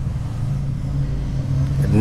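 A steady low mechanical hum, slowly growing louder.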